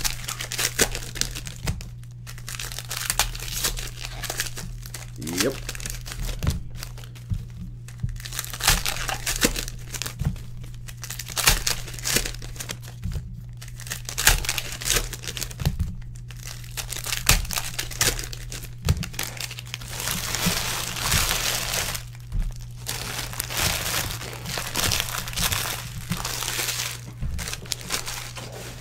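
Foil trading-card pack wrappers crinkling and tearing as packs are opened and the cards handled, in a run of irregular crackles, busiest about twenty seconds in. A steady low hum runs underneath.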